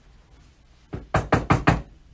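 Knocking on a hard surface, as at a door or gate: one light knock about a second in, then four quick, loud knocks.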